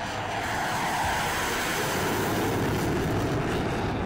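Fighter jet taking off on afterburner: a steady, rushing jet-engine noise that grows a little louder over the first second and then holds.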